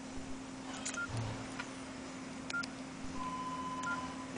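Nokia N95 8GB key tones: three short high beeps about a second apart as keys are pressed, with faint button clicks, then a steady tone held near the end. A low steady hum runs underneath.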